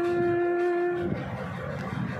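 A woman's singing voice holds one long, steady note at the end of a line of a Christian devotional song, stopping about a second in. A quieter pause follows.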